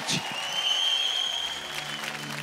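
Studio audience applauding, with one long high whistle over it that rises and then holds. A low sustained instrumental note comes in near the end.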